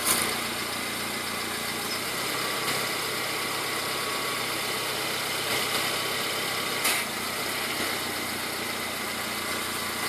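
Clark forklift engine running steadily as the forklift lifts a car on its forks. A brief knock sounds right at the start and another about seven seconds in.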